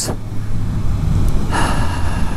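Suzuki GSX-S750's inline-four engine running steadily while riding, a low drone under road and wind noise, with a swell of hiss about a second and a half in.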